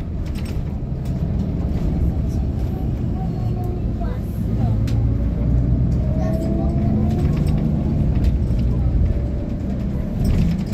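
Steady low rumble of a road vehicle in motion, heard from inside the cabin, with faint voices in the background.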